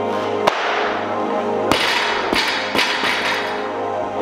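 Background music with a steady beat. Over it, a loaded barbell with rubber bumper plates hits the lifting platform a little under two seconds in and bounces and clatters several more times over the next second and a half, after a single sharp knock about half a second in.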